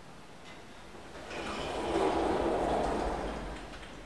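Three-panel telescopic sliding doors of an AS Ascensori SwissLift/Magic lift closing: a sliding rush that swells about a second in, peaks around two seconds, then fades.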